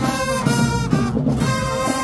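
High school marching band playing as it marches, the brass section of trumpets, trombones and sousaphones carrying the tune in held, chord-like notes.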